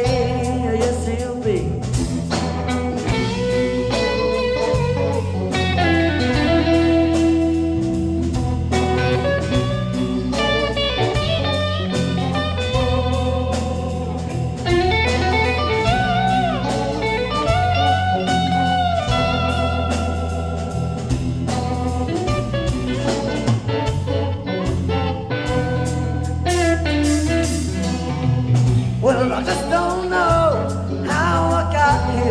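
Live blues-rock band playing an instrumental break: an electric guitar plays a lead line with bent notes over bass guitar and drums.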